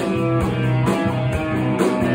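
Live rock band playing an instrumental passage: sustained electric guitar chords over a steady drum beat, with hits about twice a second.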